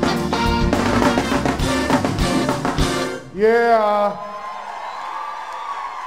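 A live soul band with a drum kit plays loudly, then stops about three seconds in. A single loud voice calls out right after, bending up and down in pitch, and is followed by a lower wash of crowd noise.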